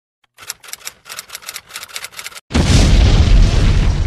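An explosion sound effect: a quick run of sharp crackles, a short break, then a sudden loud boom with a deep rumble that slowly dies away.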